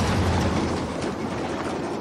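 A heavy lorry passing close by at speed on a highway, a rush of engine and tyre noise over a low rumble that fades as it moves away.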